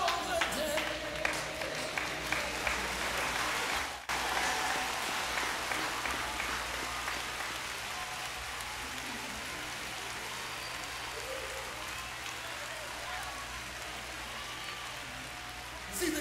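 Crowd applauding, a dense steady patter of clapping with a brief break about four seconds in.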